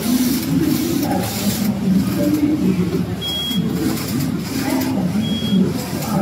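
A KSC093A-18G computerized flat knitting machine running, its carriage whirring back and forth over the needle bed, mixed into the chatter of a crowded exhibition hall. A short high beep sounds twice, about two seconds apart.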